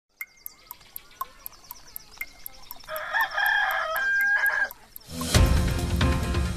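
A rooster crows over faint birdsong and a fast, even ticking of about four ticks a second. The ticking stops about five seconds in and an upbeat music jingle begins.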